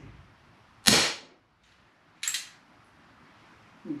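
A single shot from a Crosman 1875 Remington CO2 BB revolver: one sharp pop about a second in. A fainter, higher-pitched snap follows about a second and a half later.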